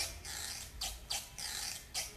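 A quiet break in a recorded song: the band drops out, leaving only faint, soft percussion strokes, like a shaker or brushes, keeping time about every 0.4 s.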